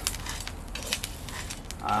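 Coffee beans part-way through roasting stirred with a metal spatula in a skillet, rattling and scraping with scattered light clicks, over a low steady hum from the propane burner.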